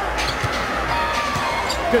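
Arena crowd noise during live basketball play, with a basketball bouncing on the hardwood court.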